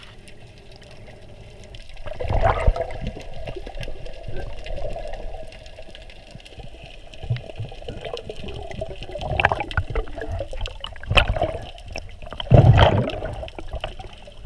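Water sloshing and bubbling around a submerged GoPro as a snorkeler swims. The sound is muffled and comes in surges, the loudest near the end.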